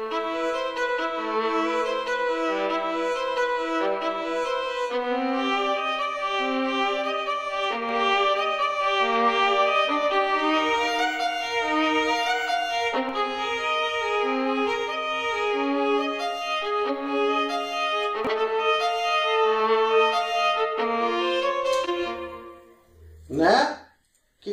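Sampled violin from the Project Alpine library, played in Kontakt with reverb, playing a simple, slow melody of sustained bowed notes. It plays first dry of the RescueMK2 saturation and stereo-widening plugin, which is then switched on about halfway through. The melody fades out shortly before the end.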